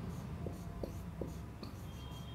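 Marker pen writing on a white board: faint, short scratchy strokes, about four in two seconds.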